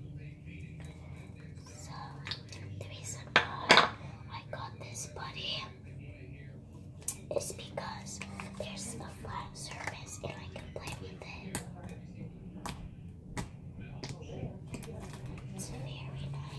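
Soft whispering over many short, sharp clicks and squelches from green slime being squeezed and worked in the hands. The loudest are a few clicks about three and a half seconds in.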